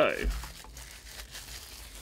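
Faint crinkling of plastic shrink wrap as it is pulled off and handled, with small irregular crackles.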